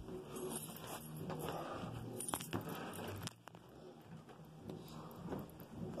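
Faint rustling and handling noise with a few light clicks around two and a half seconds in, as things are picked up and moved on a bed.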